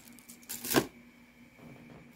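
Jewelry being handled and set aside: a short rustle with a few sharp clicks about half a second in, the loudest about three-quarters of a second in. After that it is quiet apart from a faint steady hum.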